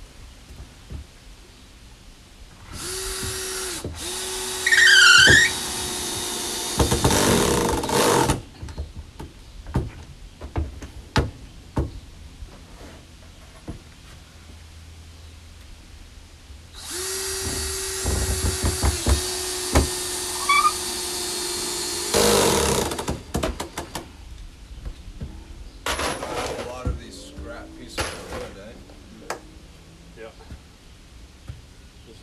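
Cordless drill driving screws into new wooden deck boards: two long runs, one a few seconds in and one in the middle, each a steady motor whine that gets louder and rougher near its end as the screw is driven home. Light clicks and knocks of handling fall between and after the runs.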